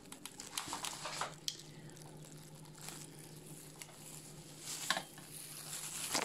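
Handling noise from a phone being set up on a kitchen table: light rustling and scattered small clicks and taps, over a faint steady hum.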